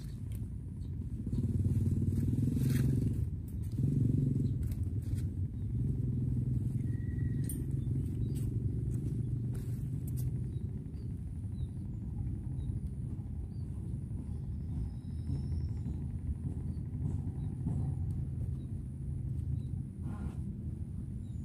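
An engine running steadily with a low hum, a little louder for the first few seconds, with a few faint clicks over it.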